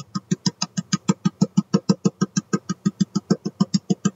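A jar of ground cinnamon being shaken out over a bowl: a fast, even train of sharp knocks, about eight a second.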